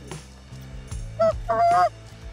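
Canada goose honks: a few short rising honks about a second in, then a longer held honk near the end.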